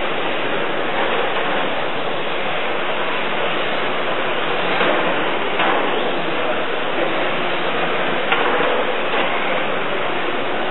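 Steady whirring hiss of 1/10 scale electric touring cars racing, from their brushless motors and tyres on the track, with a few brief knocks.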